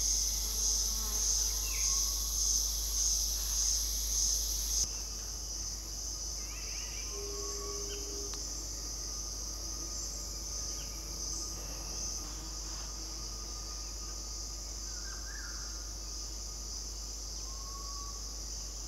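Cicadas calling in a loud, high-pitched drone that pulses a little under twice a second, then changes abruptly about five seconds in to a steadier, quieter drone. A few faint short bird chirps sound over it.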